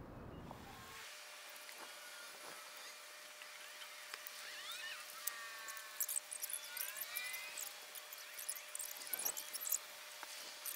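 Small kindling fire crackling as it catches in a steel fire pit, with birds chirping. Near the end, sticks knock as they are laid on the fire.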